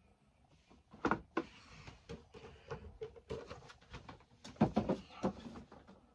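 Windowed cardboard Funko Pop boxes being slid and set onto a shelf by hand: a few knocks and scrapes, the loudest about a second in and again around five seconds, with soft rustling of cardboard between.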